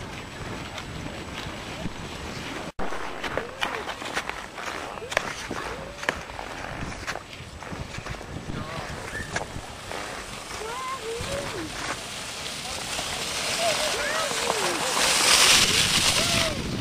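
Indistinct high-pitched children's voices calling over a steady outdoor hiss, with a sudden brief dropout about three seconds in. A louder rushing hiss builds near the end.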